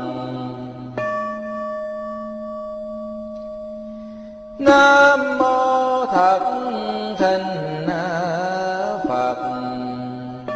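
A Buddhist bowl bell struck once about a second in, its tone ringing and slowly fading. A little before halfway, a chanting voice comes in loudly, holding a drawn-out, wavering line through to the end.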